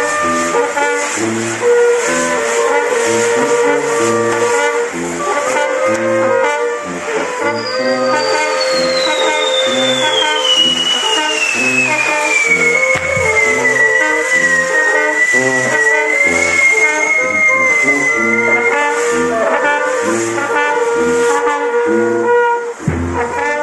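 Brass band music with a steady pulsing bass line and brass carrying the tune. Through the middle a long whistle glides slowly down in pitch.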